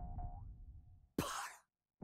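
Short cartoon-style sound effect: a sudden ringing tone over a low rumble that fades within a second, then a brief noisy swish about a second later.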